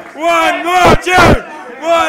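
A group of voices shouting a loud chant together in repeated bursts, calling for an encore of 'one more tune'.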